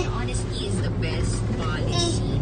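Steady low hum of a car running, heard from inside the cabin, with faint voices over it.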